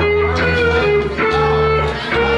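Live band music played on electric guitar and bass guitar: the guitar holds sustained lead notes, stepping between a few pitches, over a steady bass line, with no singing.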